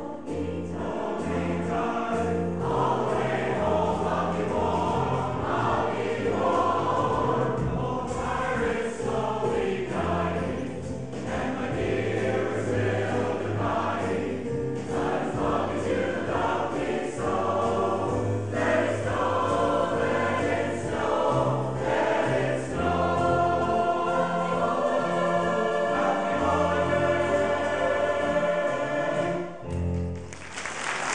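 Mixed choir of men's and women's voices singing a Christmas song, the piece ending near the end.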